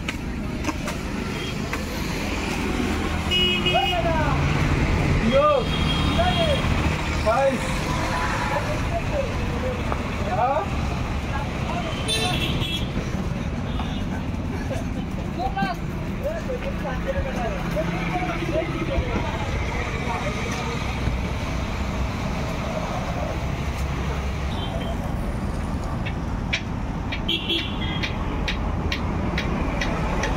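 Steady street traffic rumble with several short vehicle horn toots and indistinct voices.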